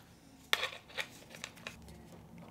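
Handling noise of small camera mounting hardware: a few separate sharp clicks and short scrapes as a cold shoe mount is screwed onto the quarter-inch thread of a plastic monitor adapter.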